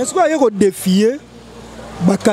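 A person speaking for about a second, then a quieter low rumble with faint background noise.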